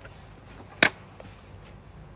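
A single sharp click just under a second in, with a much fainter tick a moment later, from a small object being handled.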